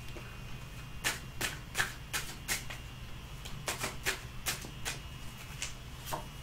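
A deck of tarot cards being shuffled by hand: a run of short, crisp card snaps, irregular, about two or three a second.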